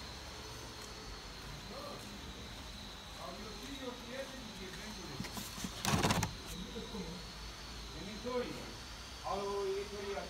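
Faint voices talking in the background over a steady, faint high-pitched whine, with one brief loud rustle about six seconds in.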